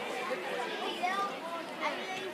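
Background chatter of spectators, several voices talking at once with no clear words.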